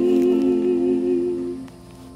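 Singing of a gospel song holding a long final note with a slight waver, then stopping about a second and a half in.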